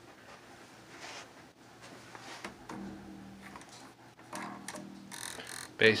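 A few low notes plucked on a four-string electric bass guitar, starting a couple of seconds in and ringing on, with short clicks of the string against the frets.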